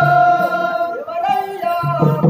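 Singing from a folk stage drama: a voice holds one long note, lets it go about a second in, and starts a new phrase, with low musical accompaniment underneath.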